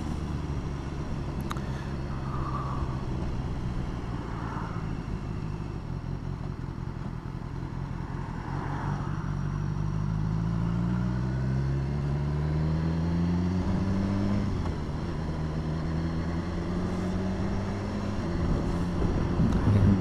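Motorcycle engine running under way. Its note climbs steadily for about six seconds as the bike accelerates from about eight seconds in, then drops away and runs on lower.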